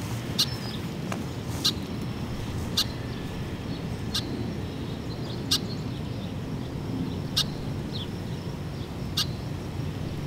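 A bird repeating a short, sharp, high call note about seven times at uneven intervals of a second or two, over a steady low background rumble.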